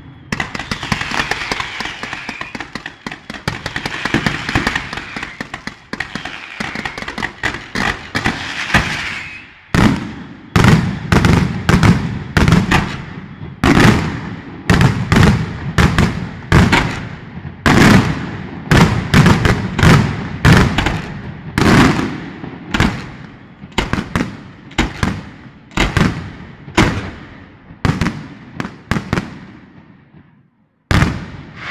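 Aerial fireworks display. For about the first ten seconds there is dense, rapid crackling of many small reports. Then, from about ten seconds in, comes a long run of loud separate bangs, roughly two a second, each with a short echoing decay.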